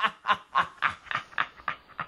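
A man laughing uncontrollably in rapid, evenly spaced bursts, about four a second, growing a little fainter toward the end.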